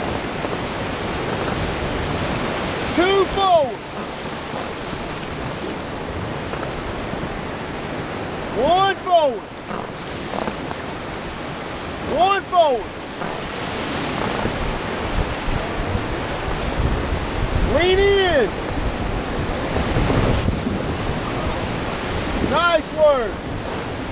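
Whitewater rapids rushing around an inflatable raft, with wind on the microphone. Five short high sounds, each rising and then falling in pitch, come through the water noise a few seconds apart.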